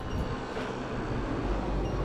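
Wind noise on an action camera's microphone and road rumble while riding an electric unicycle down a street. A deep low rumble grows stronger near the end.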